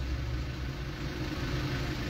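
Steady low hum of a car engine idling, heard from inside the cabin.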